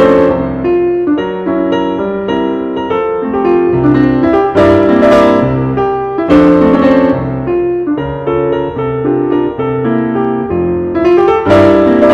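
Solo piano music playing, many-note phrases with a few strong chords.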